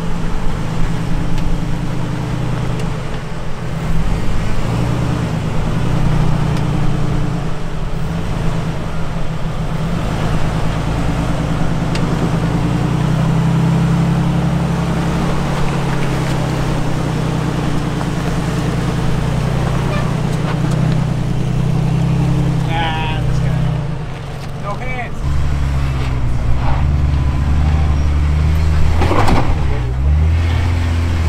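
A lifted Jeep Cherokee XJ's engine is working under load as it crawls over boulders, its revs rising and falling with the throttle. The note dips briefly about 24 seconds in and then comes back lower and heavier near the end.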